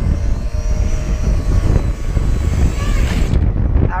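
FPV racing quadcopter's motors and propellers whining as it comes in low to land, under heavy wind rumble on the microphone. The high propeller hiss cuts off suddenly a little past three seconds in as the quad touches down and the motors stop.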